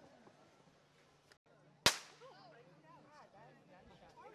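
A single sharp crack about two seconds in, with a short ringing tail, used as the start signal for the race; a false start is called right after it.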